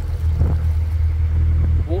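Narrowboat engine running steadily under way, a continuous low drone.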